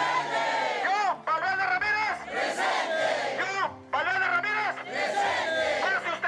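A man shouting through a handheld megaphone, with a crowd shouting along, in loud phrases about a second long with short breaks between them.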